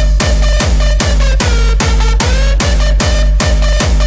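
Hardstyle dance music: a heavy kick drum hitting on every beat in a steady rhythm, with a held synth line running over it.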